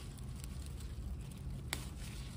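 Tomato plant leaves and stems rustling and crackling faintly as a ripe tomato is picked off the vine by hand, with one sharp click near the end, over a low rumble.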